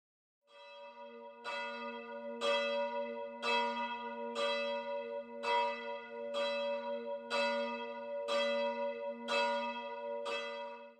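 A single church bell struck about once a second. Every strike sounds the same set of notes, and each one rings on into the next. The bell fades in about half a second in.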